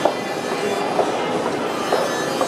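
Footsteps on a hard, polished floor, three sharp steps about a second apart, over a steady hum of busy indoor ambience.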